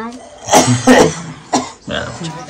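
A person coughing: three short coughs about half a second apart.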